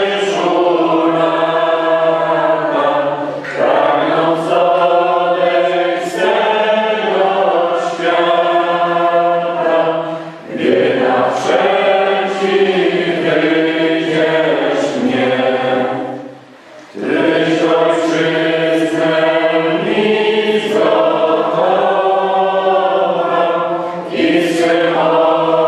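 Choir singing slow, held notes in phrases, with short breaks between phrases about ten and sixteen seconds in.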